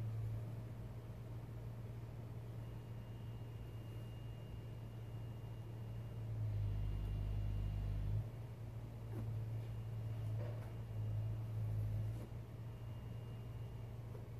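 A steady low hum that grows louder for a second or two about halfway through and again a little later, with a faint thin high tone above it.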